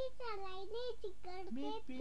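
A young child singing an Urdu song in a high voice, holding notes that slide up and down in pitch.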